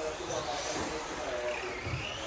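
Tamiya TT-02 electric RC touring car running on a carpet track, its motor and gears giving a thin whine that glides in pitch, rising near the end as it speeds up, with voices echoing in a large hall.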